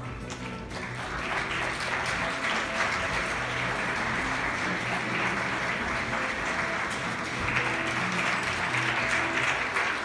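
Audience applauding steadily, starting about a second in, over background music.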